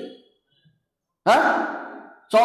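A man's voice trails off, then after a pause of about a second gives one drawn-out voiced sound that starts suddenly and fades away.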